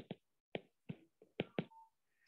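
Stylus tip tapping on a tablet's glass screen during handwriting: about half a dozen short, sharp clicks at irregular spacing.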